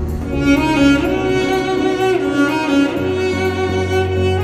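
Cello played with the bow: a melody of held notes over a low sustained bass.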